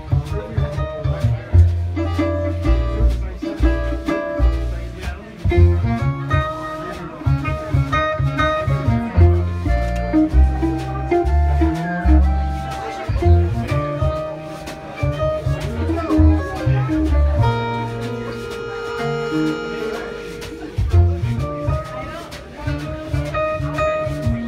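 Small jazz band playing live: upright bass, archtop guitar, clarinet and accordion, with a strong walking bass line under the melody. About three-quarters of the way through, the melody holds one long note for about three seconds.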